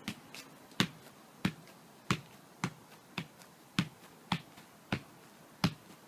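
A football being juggled: a short, sharp thump at each touch of the ball, about two touches a second in an even rhythm.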